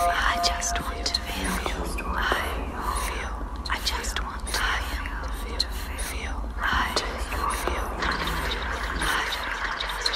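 Many home-recorded whispering voices layered over one another into a dense, continuous hissing wash, with a steady low hum underneath.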